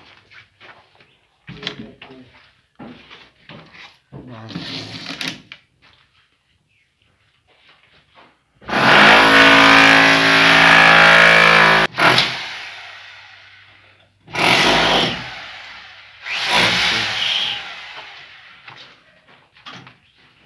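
An electric power tool runs loudly with a steady motor whine for about three seconds, then cuts out. It is triggered twice more in short bursts, each time winding down over a second or two.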